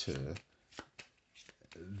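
A deck of Petite Lenormand cards being shuffled by hand: a few light, sharp clicks of cards sliding and tapping together.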